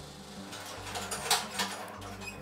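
A pupae-and-frass separating machine running with a steady hum. The dry, granular frass and pupae inside it rustle and rattle with light clicks, loudest between about half a second and a second and a half in, over a quiet background music bed.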